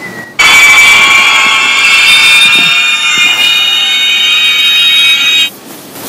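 A loud, steady, high alarm-like electronic tone made of several held pitches, starting abruptly and cutting off suddenly about five seconds later.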